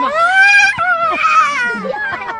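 A child wailing: two long high-pitched cries, the second starting just under a second in.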